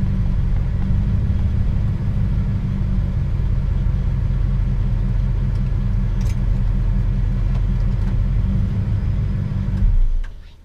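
A 1998 Damon Intruder motorhome under way, heard from inside the cab: a steady, loud low rumble of engine and road noise, with one faint click about six seconds in. The rumble cuts off suddenly at the very end.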